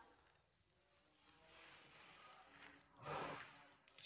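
Mostly near silence, with the faint soft sound of a hand mixing a damp cauliflower, egg and gram-flour mixture in a bowl, and one brief, slightly louder soft noise about three seconds in.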